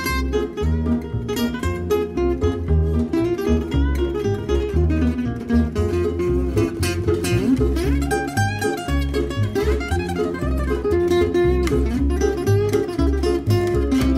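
Background music led by plucked strings, guitar-like, over a steady pulsing bass line.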